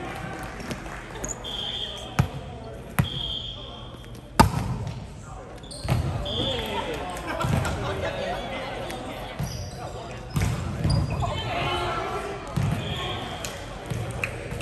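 A volleyball smacking on the hardwood gym floor three times, the third the loudest, ringing in a large hall, with short high sneaker squeaks on the court and players' voices.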